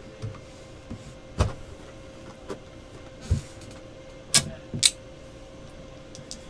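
A few sharp clicks and knocks of small objects being handled on a desk, the loudest two close together near the end, over a faint steady hum.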